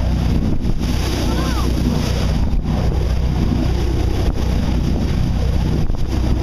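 Boat under way at speed: a steady engine hum under water rushing and foaming along the hull, with wind buffeting the microphone.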